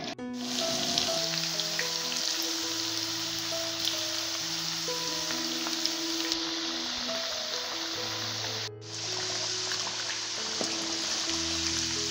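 Background music of long held notes over the steady sizzle of halved potatoes frying in hot oil in a pan. Both drop out for a moment just after the start and again about nine seconds in.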